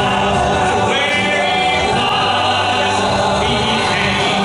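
Men's vocal trio singing a gospel song in close harmony, holding long notes, over a live band with drum kit and guitar.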